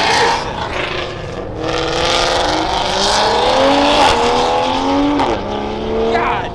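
Toyota Supra accelerating hard past, its engine pitch climbing in several rising runs through the gears, then dropping back to a lower steady note about five seconds in.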